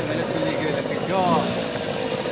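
A steady engine hum, like an idling motor, runs under market chatter, with a brief voice about a second in.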